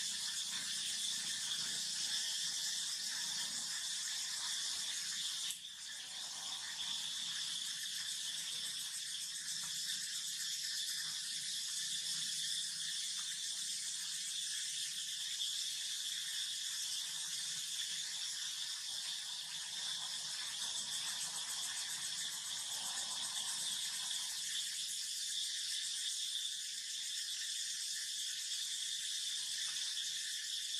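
Steady, high-pitched drone of an insect chorus, with a brief dip in level about five seconds in.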